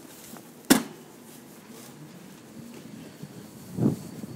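A single sharp knock about three-quarters of a second in, over a low steady background, followed near the end by a brief low rumble.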